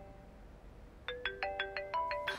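Smartphone ringtone: a melody of quick, short notes that starts again about a second in after a brief pause between repeats.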